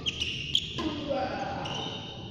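Badminton rally: sharp racket hits on the shuttlecock, the loudest about half a second in, and sports shoes squeaking briefly on the court mat near the start and near the end.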